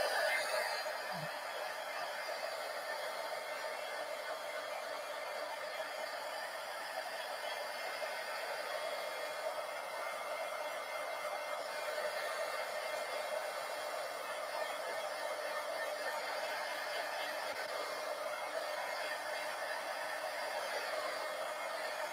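Marvy Uchida embossing heat gun blowing steadily, a constant whooshing fan and air noise, drying wet matte medium on a paper collage.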